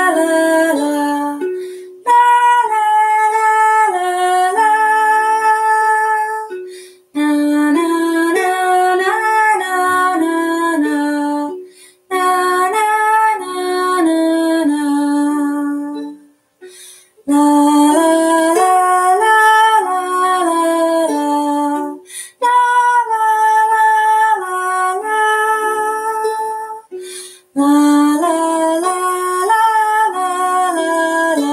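A woman singing a slow, wordless lullaby melody on "la" over a softly plucked ukulele. She sings in phrases of about five seconds, each with a short break between.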